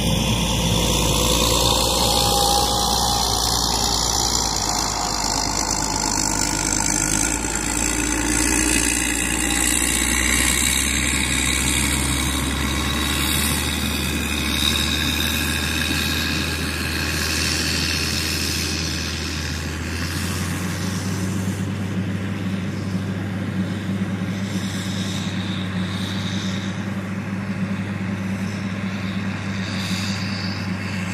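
Caterpillar 120K motor grader's diesel engine running steadily as the grader pushes soil into a trench with its blade. The engine's low note changes pitch about two-thirds of the way through.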